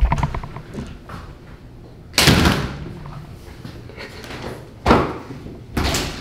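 Framed frosted-glass shower door being swung and knocked against its metal frame. There is a short rattle at the start, then two loud bangs that ring on, about two seconds in and just before five seconds, and a lighter knock near the end.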